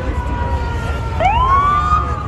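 Emergency-vehicle siren: one tone slowly winding down, then about a second in a siren winds up quickly and holds high, over a steady low rumble.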